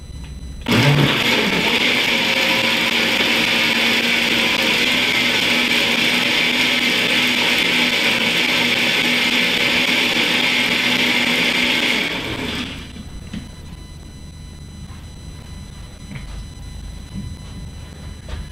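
Countertop blender blending a thick green smoothie: the motor comes on suddenly about a second in and runs at a steady speed with a constant hum for about eleven seconds, then winds down and stops.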